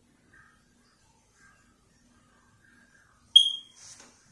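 Near silence broken about three seconds in by a single short, high electronic beep that dies away quickly, followed by a brief soft rustle.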